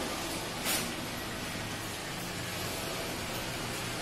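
Steady background noise of a workplace, a hiss with a faint low hum, with one short click about a second in.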